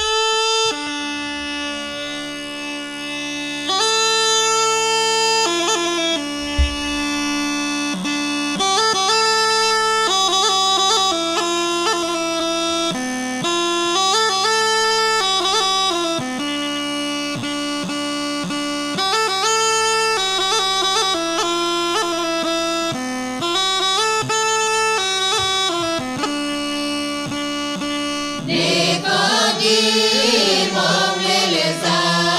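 Rhodope kaba gaida, the large low-pitched Bulgarian bagpipe, playing an ornamented folk melody over a steady drone. Near the end a group of voices comes in singing.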